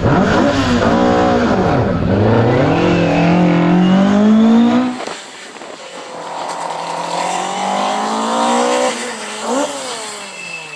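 Ford Escort Mk2 rally car's engine revving hard through tight turns. The pitch drops as it lifts off about a second and a half in, then climbs steadily. After a sudden cut about five seconds in, it is quieter and revs up again, with a quick blip near the end.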